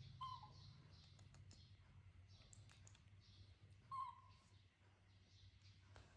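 Two brief, faint high squeaks from a baby macaque, one just after the start and a louder one about four seconds in, over a quiet room with a low hum and a few light ticks.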